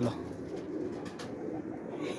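Pigeons cooing low and continuously in a loft.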